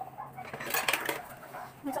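A short burst of light metallic clinks and rattles about a second in, as small metal objects are handled and knock together.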